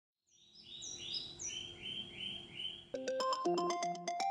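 Birds chirping in a quick series of short high chirps, then about three seconds in a smartphone alarm starts ringing: a repeating melody of bright, plinking tones, loud against the birdsong.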